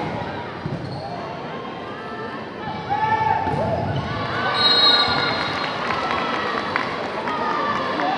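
Indoor volleyball rally in a large, echoing sports hall: ball hits and short shoe squeaks on the court floor over steady crowd noise and players' shouts.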